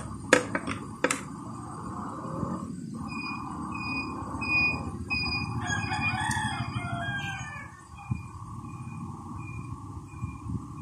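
A bird calls in the background: one long call of about two seconds, starting some five and a half seconds in, with a short high peep repeating about every half second over a steady hum. A few clicks come in the first second.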